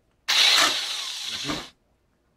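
Corded electric drill fitted with a hole saw, run briefly off the work for about a second and a half, then stopping sharply.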